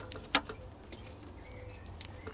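A plastic drinks bottle being handled while watering seedling pots, giving one sharp click about a third of a second in, then a few faint ticks, with faint bird chirps in the background.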